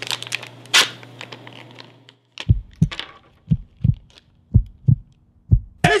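A foil blind bag crinkling and rustling as it is cut open with a knife. About two seconds in, a heartbeat sound effect starts: pairs of low thumps, about one pair a second, with near silence between them.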